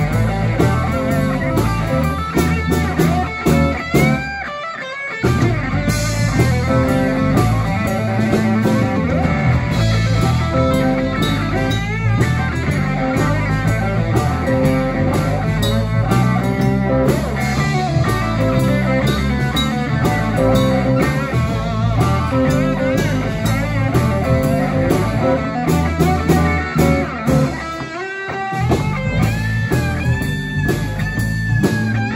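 Live blues band playing: an electric guitar lead with bent notes over bass and drums. The bass and drums drop out briefly twice, about four seconds in and again near the end, leaving the guitar ringing alone.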